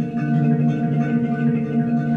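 A PANArt Hang, a steel handpan, played with the fingertips: a quick run of struck notes that ring on and overlap into a sustained, bell-like chord.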